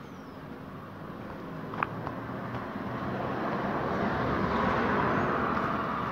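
A car passing along the street, its engine and tyre noise growing steadily louder over several seconds as it approaches. A brief click sounds about two seconds in.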